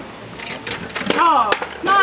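A young child's high-pitched voice from about a second in, with a few light clicks.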